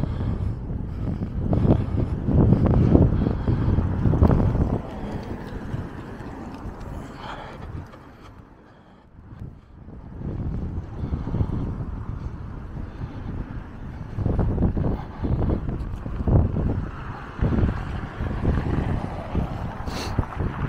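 Gusty wind buffeting the camera microphone as a low, uneven rumble. It is loudest in the first few seconds and again in the last third, with a lull around the middle.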